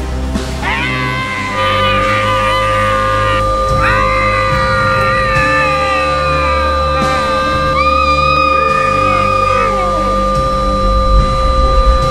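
High-pitched screaming in long, wavering cries that fall away at their ends, three times over, laid over background music. A steady high tone sets in about a second and a half in and holds.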